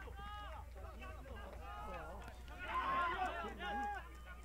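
Players' voices shouting and calling out on the pitch in celebration of a goal, heard faintly at a distance, with several voices together about three seconds in. A steady low hum runs underneath.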